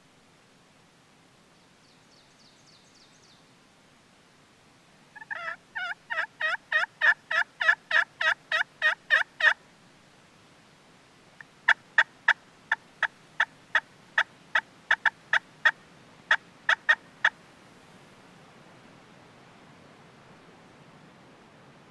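Friction turkey pot call (Primos Hen Slayer) played to imitate a hen turkey. It gives a run of about fourteen steady, evenly spaced yelps, then a pause, then a quicker, less even string of about fifteen short, sharp cutts.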